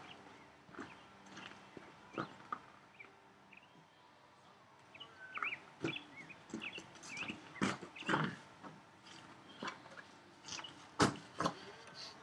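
Footsteps crunching on gravel with scattered light knocks, a sharper knock near the end, and a few short bird chirps in the middle.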